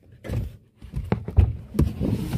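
A few irregular low thumps and knocks, the loudest about one and a half seconds in: handling noise from a hand-held phone being moved around inside a car.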